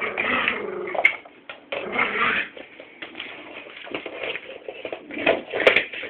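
Staffordshire bull terrier puppy whimpering in short, irregular bursts.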